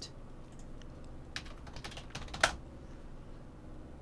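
A few light clicks from a computer being worked by hand, bunched between about one and a half and two and a half seconds in, the last one the sharpest.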